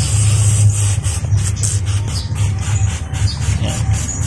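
A hand-pump pressure sprayer misting water with a hiss, over a steady low hum.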